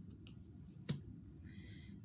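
Tarot cards being handled as a card is drawn: a few faint ticks, then one sharp snap of a card about a second in, and a soft rustle near the end.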